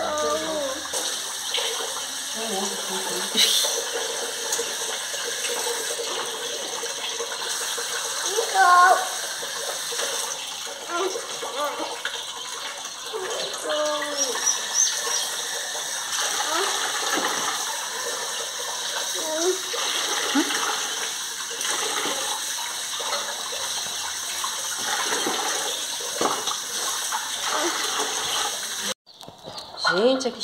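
Tap water running steadily into a metal pot of chicken pieces as they are washed by hand, cutting off suddenly near the end.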